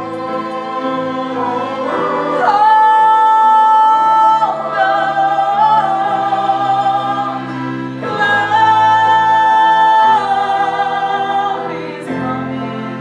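A woman singing a solo musical-theatre song over instrumental accompaniment, holding two long high notes, one a few seconds in and one about two-thirds of the way through.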